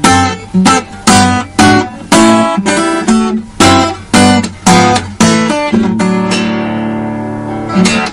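Solo steel-string acoustic guitar played fingerstyle in drop-D tuning: a bass line with plucked melody notes about twice a second. From about six seconds in it settles on a chord left to ring and fade, with one last short stroke near the end.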